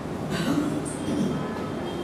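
A man's brief low, wordless vocal sound, a murmur lasting under a second, over steady room noise.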